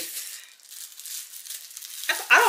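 Plastic packaging crinkling and rustling with small scattered ticks as a kitchen knife in its wrapping sleeve is handled.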